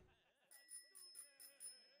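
Near silence, with faint, wavering, voice-like sounds from about half a second in.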